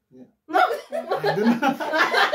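Several people laughing together, mixed with talk, breaking out about half a second in after a brief soft sound.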